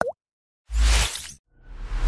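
Sound effects for an animated logo. A quick pitched pop comes first, then about a second later a noisy whoosh with a heavy bass hit that lasts under a second, and a second whoosh builds near the end.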